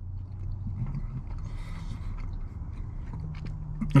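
A person chewing a bite of a soft, hot, chocolate-filled beignet with the mouth closed, with faint small wet clicks. A low steady hum runs underneath and steps up in pitch a couple of times.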